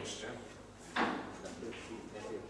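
A single sharp knock about a second in, ringing briefly in the room, over faint background voices.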